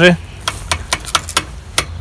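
Bicycle brake lever being worked by a hand inside a fleece-lined handlebar mitt, giving a string of about six sharp clicks.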